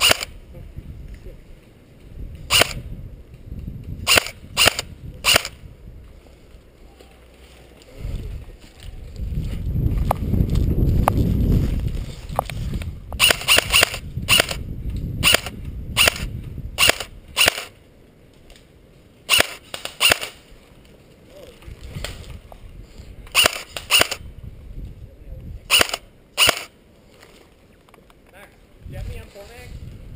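Airsoft rifle firing sharp single shots, about twenty in all, some spaced seconds apart and some in quick runs of two or three, the thickest run in the middle of the stretch. A few seconds of low rumbling noise come shortly before that run.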